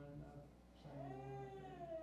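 A man's voice through the church PA, holding one drawn-out sound for about a second; its pitch rises and then falls.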